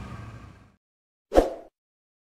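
A single short plop sound effect about a second and a half in, from a subscribe-button animation, after silence.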